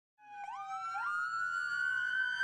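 Police-style siren sound effect with two pitched tones sounding together. They start about a fifth of a second in, each jumps up in pitch twice within the first second, then glides slowly.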